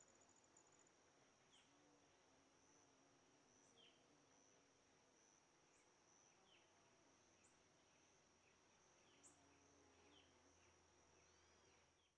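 Very faint outdoor nature sound: insects trilling steadily on one high note, with short bird chirps every second or two. It fades out at the end.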